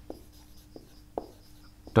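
Marker pen writing on a whiteboard: a few short, separate strokes across the board.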